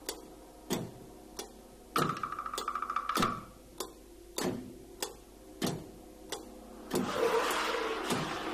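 Sparse, sharp single strokes on a large Chinese drum, with a quick rattling flurry about two seconds in. Near the end a shimmering hiss builds as large cymbals are scraped together.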